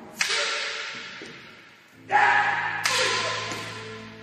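Wooden jo staff and wooden sword striking together: a sharp clack about a fraction of a second in, then two more close together about halfway through, each ringing out in a reverberant hall. A steady low musical tone sounds under the second half.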